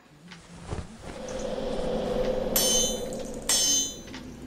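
A swelling whoosh builds for about two seconds, then a hammer strikes an anvil twice, about a second apart, each blow ringing on metallically.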